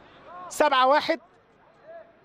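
Speech only: a male football commentator briefly says the score in Arabic, with faint background noise before and after.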